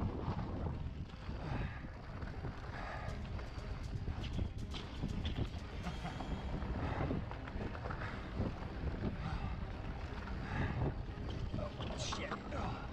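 Wind buffeting the microphone over the rumble of a mountain bike's tyres on a rough dirt singletrack, with scattered clicks and rattles from the bike bouncing over the ground.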